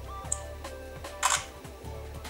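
Asus PadFone smartphone's camera app playing its shutter sound as a photo is taken: one short snap about a second in, preceded by a brief high tick. Soft background music runs underneath.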